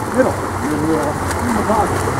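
Steady wash of water splashing as water polo players swim and churn the pool, with spectators' voices calling out over it.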